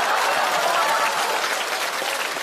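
Studio audience applauding, a dense, steady clapping that eases slightly near the end.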